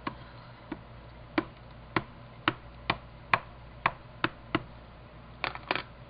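Memento ink pad dabbed repeatedly onto a clear stamp to ink it: about a dozen short, sharp taps, roughly two a second, with a quick double tap near the end.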